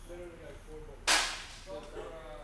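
A single sharp, loud crack about a second in that dies away over half a second, with faint voices around it.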